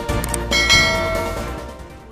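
Intro music ending on a bright bell chime about half a second in, a notification-bell sound effect that rings out and fades away over about a second and a half.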